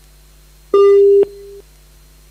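Telephone busy tone coming through the conference call line: a single steady beep of about half a second, dropping abruptly to a quieter tail that soon cuts off, over a faint steady line hum. The sign that the caller's line has dropped.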